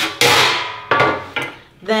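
A metal baking sheet set down on a wooden table: three clattering knocks within about a second, the first the loudest and ringing briefly.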